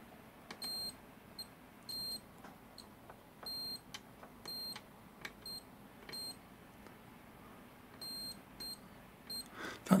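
Digital multimeter on its continuity setting beeping in about a dozen short, irregular bursts as the probe tips make and lose contact on the graphite-paint coating of a 3D-printed PLA figure; each beep is a sign that the coating conducts. Faint clicks of the probes can be heard between the beeps.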